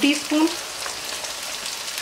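Ground onion and ginger-garlic masala frying in hot oil in a kadai on a high flame, a steady sizzle.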